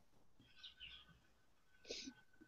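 Near silence on a video call, with a few faint brief high chirps.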